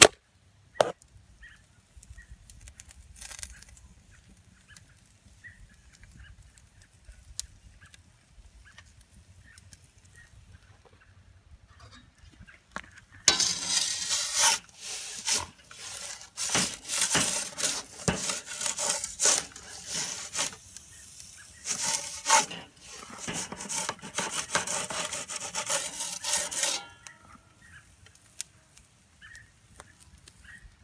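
Camera handling noise: close rubbing and scraping on the microphone, loud and full of short scratchy strokes, for about thirteen seconds starting about thirteen seconds in. Before it the sound is quiet, apart from a sharp click at the start.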